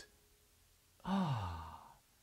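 A man's voiced sigh about a second in, one breathy exhalation whose pitch slides steadily downward for just under a second.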